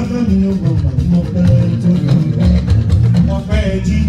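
A group singing together over band music with a steady beat and heavy bass.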